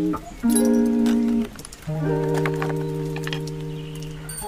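Background music with long held notes: one note for about a second, then a brief dip, then another held for over two seconds.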